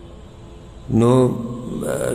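A man's voice over a microphone, starting about a second in after a brief lull, with a long held, chant-like note that then glides in pitch.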